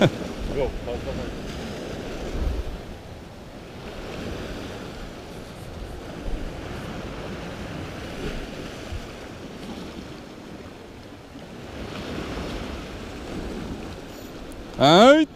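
Sea waves surging and breaking against a rocky shoreline in a steady wash, with wind rumbling on the microphone.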